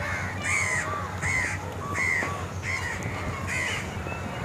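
A crow cawing in a rapid, regular series of short calls, about two a second.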